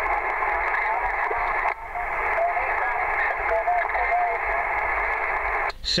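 Yaesu transceiver receiving single-sideband on the 11-metre band: steady, narrow-band hiss with a weak, garbled voice of a distant station barely rising out of the noise. The hiss cuts off suddenly near the end.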